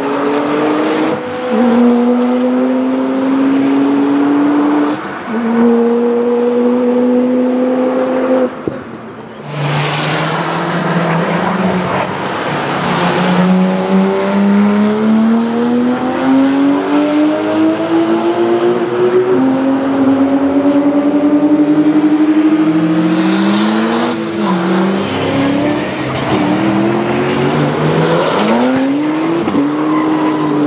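Porsche 997 GT2 and GT3 flat-six engines accelerating hard, one car after another. Each climbs in pitch through a gear, drops at the upshift and climbs again. There is a short lull about nine seconds in, where one run fades and the next begins.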